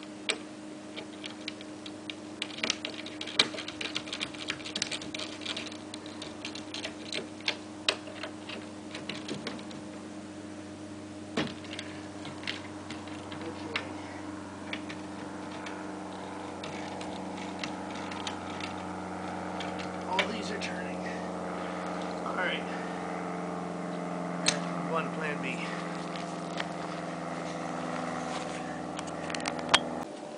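Irregular metal clicks and taps of hand tools working the bolts on a wheelbarrow's handle, busiest in the first half and thinning out later, over a steady low hum.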